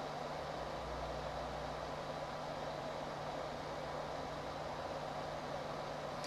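Room tone: a steady hiss with a faint constant low hum and no other event.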